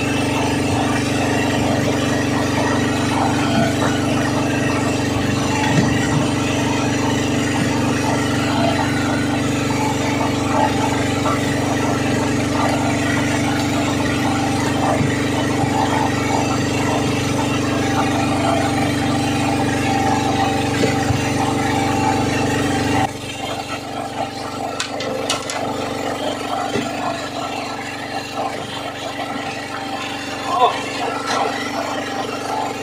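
A boat's engine running with a steady drone, which cuts off abruptly about three-quarters of the way through, leaving quieter background noise with a few light clicks.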